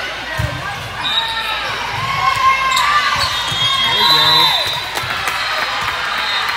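Indoor volleyball rally: the ball struck in a few sharp hits, sneakers squeaking on the court floor, and players calling out over a murmuring crowd, all echoing in a large gym.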